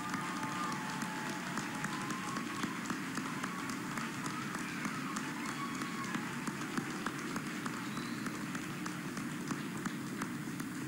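Audience applause in a large hall: many hands clapping steadily throughout.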